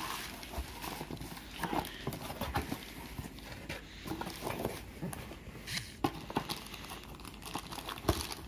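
Cardboard box being opened by hand: flaps scraping and rustling, with scattered light knocks and taps on the cardboard.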